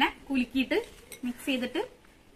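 A woman talking in short phrases, with light clinks of a glass bowl being handled in her hands.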